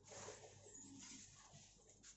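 Near silence: faint room tone.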